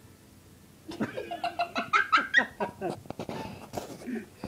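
A person laughing in quick repeated bursts, starting about a second in after a moment of near silence.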